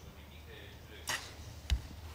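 A compound bow being shot: a short sharp release and string snap about a second in, then about half a second later a single sharp smack of the arrow striking the target.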